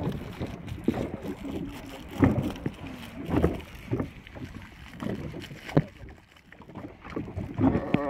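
Paddling a small boat: irregular knocks and splashes about once a second from the paddle strokes against the water and hull, over steady wind and water noise, with faint voices.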